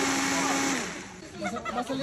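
A steady motor running with a constant hum, which cuts off abruptly a little under a second in. Voices follow.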